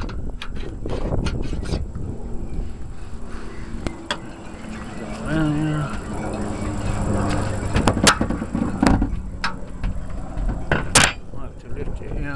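Wind buffeting the microphone, with several sharp clicks and knocks from a hinged solar-panel mount being handled, the loudest two about eight and eleven seconds in.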